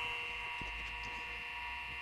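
Steady machine hum and whine of an old PC running with its Seagate ST-4038 MFM hard drive spun up: a high, steady tone over a low hum, with one faint tick a little way in.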